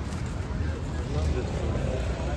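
Busy street ambience: faint voices of passers-by over a steady low rumble of traffic.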